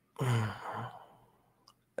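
A man's voiced sigh, breathy and about a second long, starting just after the beginning.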